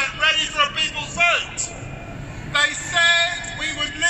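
A man's speech amplified through a public-address system, with a short pause in the middle.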